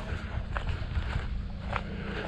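Footsteps on a dirt track, a few faint crunches over a steady low rumble.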